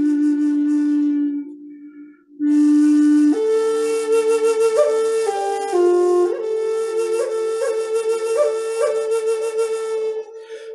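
Wooden Native American flute playing a slow, breathy melody. A long low note fades out, there is a short pause for breath about two seconds in, then the tune steps up higher, with several quick grace-note flicks on the held notes.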